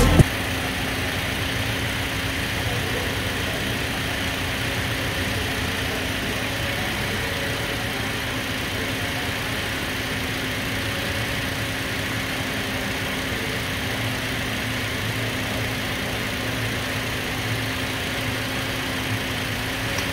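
Toyota Land Cruiser Prado engine idling steadily, heard from over the open engine bay.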